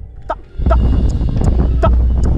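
A few isolated strokes on a marching snare drum. About half a second in, a loud steady low rumble sets in, with scattered sharp clicks over it.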